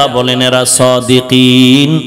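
A man's voice chanting in a melodic, sing-song preaching style, holding one long note in the second half.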